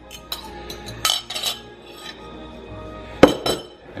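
A metal measuring cup and a spoon clinking and scraping against a ceramic mixing bowl as flour is tipped in and stirred into the egg and melted cheese, with a sharp clink a little after three seconds.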